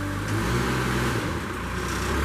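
Caterpillar engine of a Princeton PBX truck-mounted forklift running while the mast is raised and lowered, its note shifting and dipping partway through as the hydraulics take load.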